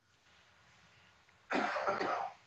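A pause of near silence, then a single cough about one and a half seconds in.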